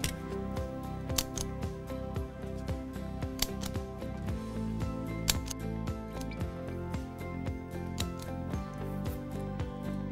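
Background music, with sharp clicks at irregular intervals of roughly a second as playing cards are flipped one by one and set down on a pile.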